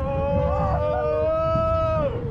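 Riders on a spinning steel roller coaster screaming in long held yells, two or three voices overlapping, the loudest rising slightly in pitch before breaking off at the end, over a low ride rumble.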